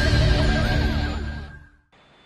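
Theme music of a TV news channel's logo intro, fading out to near silence about a second and a half in.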